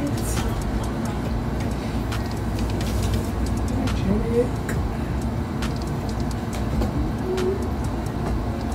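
Steady low rumble of room noise, with soft rustling and light clicks as a pair of pants is unfolded and shaken out by hand; faint music in the background.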